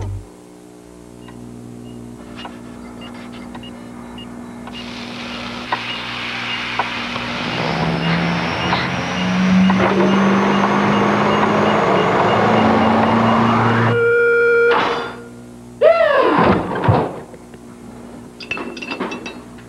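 Commercial sound design: a steady low drone that swells into a loud, rising noisy build with a thin climbing whistle, cutting off suddenly about fourteen seconds in. A short electronic tone follows, then a sound that drops steeply in pitch and swoops back up.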